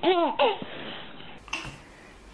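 A toddler's high-pitched laughter, two quick bursts at the start that then trail off, as a bulldog nuzzles its ear.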